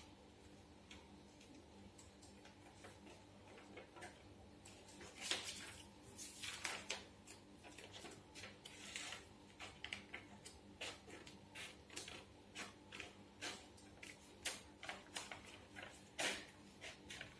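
Scissors snipping through a sheet of paper: faint, irregular short clicks, with a few longer rustles of the paper being handled around the middle.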